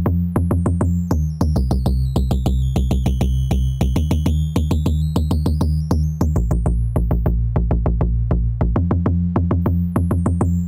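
Synth bassline played through a bitcrusher whose downsampling is swept slowly by a sine-wave LFO, over a dense, evenly spaced electronic rhythm. Whistly aliasing tones slide down as the downsampling deepens, lowest about halfway through, then climb back up.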